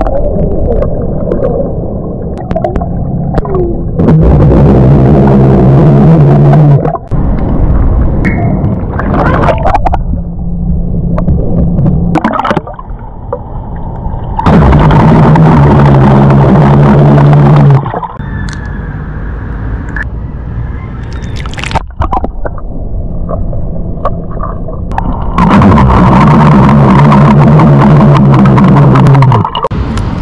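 A man burping underwater, heard through the water: three long, low-pitched burps of three to four seconds each, with gurgling water and bubbling between them.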